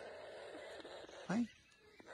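Young toucans making faint, steady begging calls while being hand-fed, with one short spoken word about a second in.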